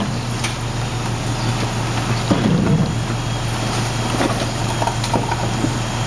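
Rear-loader garbage truck's engine running steadily with a low hum, with a few light knocks.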